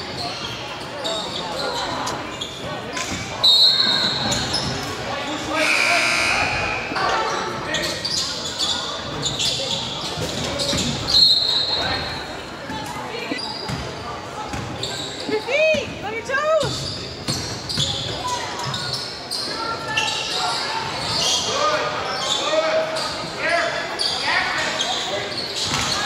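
Basketball game sounds echoing in a gymnasium: a ball bouncing on the hardwood floor, sneakers squeaking, and the chatter of players and spectators. Two short high tones, about 3.5 and 11 seconds in, and a run of squeaks a little after the middle.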